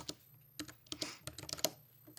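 Someone typing on a computer keyboard: quiet, irregular key clicks, with a short pause just after the start and then a quick run of keystrokes.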